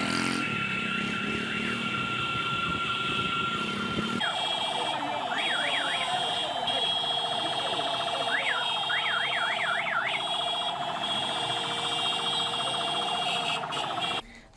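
Street motorcade noise with steady high tones. An electronic siren yelps in rapid up-and-down sweeps, in two spells a few seconds apart. The sound changes abruptly about four seconds in.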